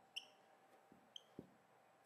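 Near silence: room tone with a few faint short ticks.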